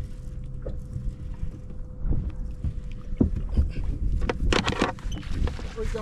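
Wind and water noise around an open bass boat, a low rumble with a faint steady hum throughout, with scattered knocks of gear on the deck and a burst of rattling and scraping about four and a half seconds in as fishing gear is handled during the fight with a hooked fish.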